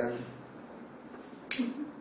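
A man's exclamation ends at the start, then a quiet room, and about a second and a half in a single sharp click followed by a brief low vocal sound.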